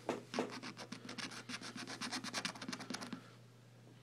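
A coin scratching the coating off a lottery scratch-off ticket in a fast run of short rubbing strokes, stopping about three seconds in.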